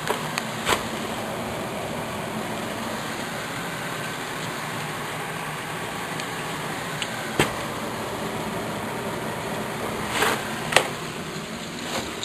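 Electric sump pump running steadily in its pit, pumping the water out, with a few light knocks.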